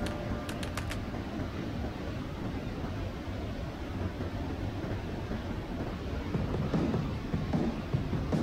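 Steady rush of a mountain river's water in a narrow gorge. A few short clicks and the tail of music fade out in the first second.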